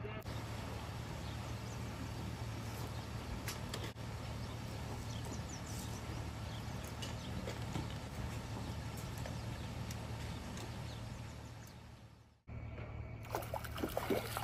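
Steady outdoor background noise with a constant low hum and faint distant voices. It drops away briefly near the end, then resumes.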